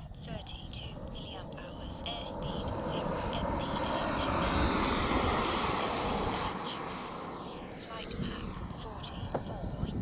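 Twin JetFan 110 electric ducted fans of a large RC jet at full power on a no-flap takeoff run. A rushing, high whine builds, is loudest about five seconds in, then fades as the jet passes and climbs away.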